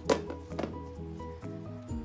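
Two knocks as a glass pane is lifted out of a thin picture frame: a sharp one just after the start, then a softer one half a second later, over background music with steady sustained notes.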